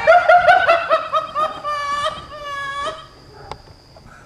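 A person laughing hard in quick, high-pitched bursts for about three seconds, then a single sharp click.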